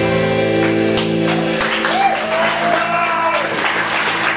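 A rock band's final chord ringing out on electric guitars and bass, fading away about three seconds in. Audience applause starts about half a second in, with a single cheer in the middle.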